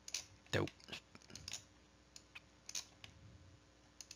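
Faint, irregular clicks and taps of a stylus on a tablet as handwriting is inked onto a slide, with a louder, fuller sound about half a second in.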